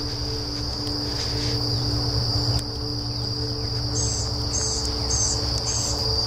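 Insects, likely crickets, trilling in one steady, continuous high tone over a low rumble. Near the end, a bird gives four short, high chirps about half a second apart.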